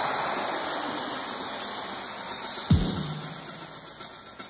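Dance music dubbed off the radio onto cassette, in a sparse passage: a hissing wash of noise slowly fades, with one deep drum hit nearly three seconds in.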